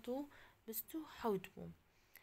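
A woman's voice speaking softly, half-whispered, in short broken fragments.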